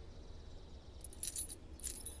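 Small metal objects jingling faintly in two short bursts, one about a second in and a briefer one just before the end.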